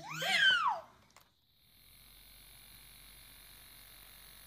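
A baby's high-pitched shriek, one arching rise and fall in pitch lasting under a second at the start, followed after a click by a faint steady hum.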